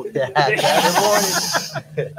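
Laughter and overlapping talk, with a loud breathy hiss through the middle second.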